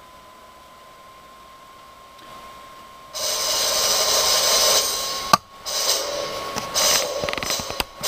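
Sound of a video playing through laptop speakers, picked up off the room: a faint steady tone for about three seconds, then loud, harsh, noisy sound that cuts in and out, with a sharp click a little after five seconds.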